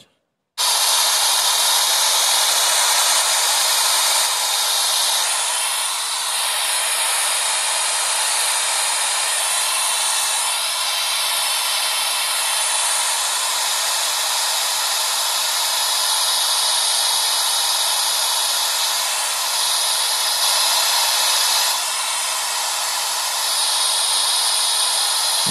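Loud, steady static hiss, switched on abruptly about half a second in, used as the noise background for a psychophony (EVP) recording session.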